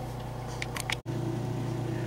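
Steady low hum of room tone with a few faint clicks, broken by a brief dropout about halfway through.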